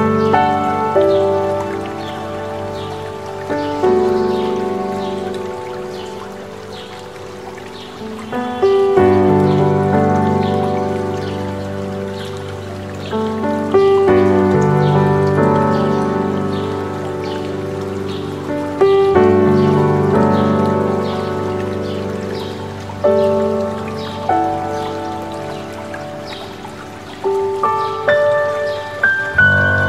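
Slow solo piano music, with notes left to ring and a new chord struck about every five seconds, over the steady rush of a mountain stream. Birds chirp high above the music throughout.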